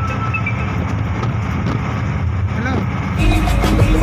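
Steady low rumble of a moving vehicle heard from inside, with faint voices under it. A little over three seconds in, the sound cuts abruptly to background music.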